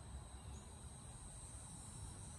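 Faint, steady insect chorus: unbroken high-pitched chirring, over a constant low outdoor rumble.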